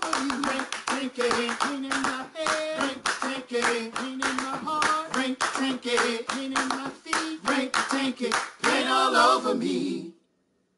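A cappella male voices singing a Gullah game song in close harmony, over steady rhythmic hand clapping.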